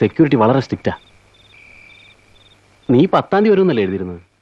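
Crickets chirping in the background, a steady high trill with evenly repeated short pulses, under a man's speech heard in the first second and again from about three seconds in.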